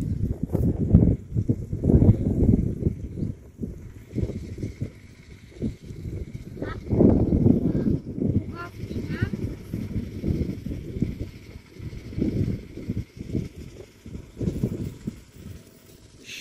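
Wind buffeting an outdoor microphone in uneven gusts, a low rumbling rush, with faint indistinct voices now and then.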